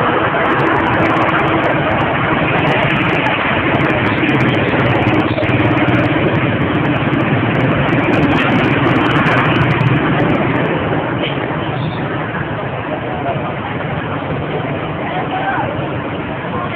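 Loud, steady street noise: a vehicle engine running, with voices mixed in.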